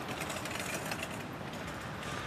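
Wire shopping cart rolling over pavement, its wheels and basket rattling steadily.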